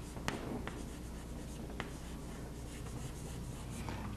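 Chalk writing on a chalkboard: faint scratching of the chalk with a few sharp taps as it strikes the board, over a steady low hum.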